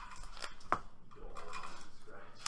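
Trading cards and a deck box being handled and set down on a playmat: soft scratchy rustling with two sharp taps close together about half a second in.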